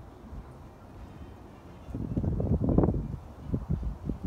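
Wind buffeting the phone's microphone outdoors: a low rumbling burst about halfway through, then a few short low thumps.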